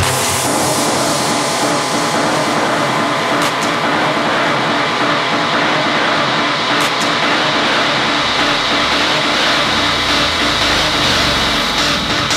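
Techno breakdown with no kick drum: a dense, loud wall of noisy, distorted synth texture. A low bass rumble swells up in the second half.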